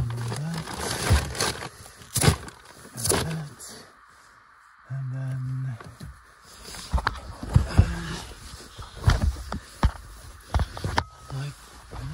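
Rear seat headrests and seatbacks of a small hatchback being handled: a scatter of sharp plastic and metal clicks and knocks, thickest in the second half. Short grunts and a held hum just after the middle come from the man doing the work.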